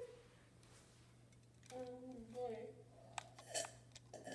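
A soft, short hummed voice about two seconds in, then two light clicks near the end as the toy helicopter and its remote are handled.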